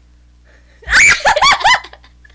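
A short, loud burst of high-pitched laughter, about four quick peals in a row, starting a little under a second in.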